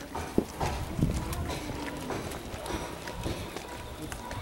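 Footsteps on a stone-paved path: irregular knocks and scuffs.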